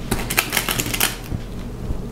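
Cotton fabric being folded into a pleat and pinned by hand: a run of small rustles and ticks, busiest in the first second, then quieter.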